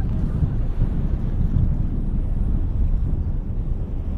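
Wind buffeting the microphone in a steady, uneven rumble over the low running drone of a boat under way.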